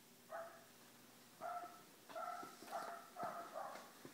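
A dog barking faintly and muffled, about six short barks spread through a few seconds.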